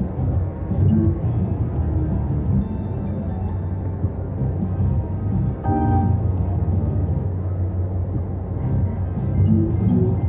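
Lucky Larry's Lobstermania 3 video slot machine playing its game music and reel-spin sounds over a low, steady background din, with one short pitched tone about six seconds in.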